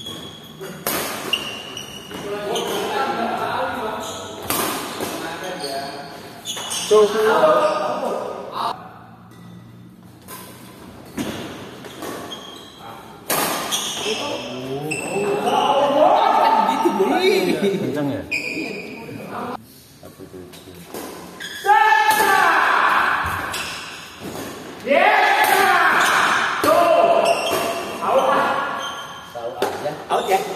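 Badminton play in an indoor sports hall: sharp racket strikes on the shuttlecock, with players and onlookers shouting and calling out loudly between and during rallies.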